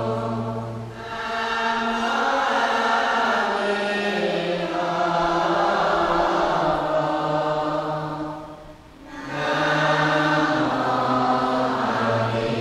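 Buddhist chanting by a group of voices singing together in long, slow held notes. It drops away briefly twice, about a second in and about three seconds before the end.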